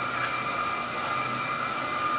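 Wood chip boiler plant running: a steady machine drone with a constant high whine.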